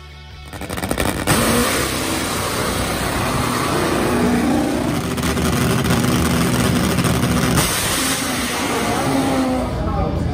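Top Fuel nitro drag motorcycle engine running very loud at the starting line. The harsh noise comes in about a second in and carries on almost to the end.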